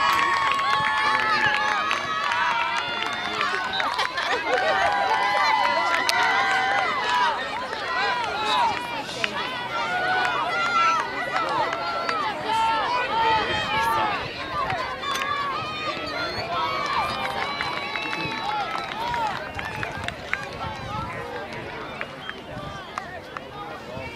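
Many overlapping voices of spectators and players shouting and calling out during a youth soccer match, with a few long held calls at the start. The calling is loudest in the first half and thins out toward the end.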